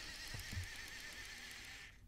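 Faint, steady whir of the motorized LEGO Technic excavator's electric motors running under remote control, with a thin wavering whine; it cuts off just before the end.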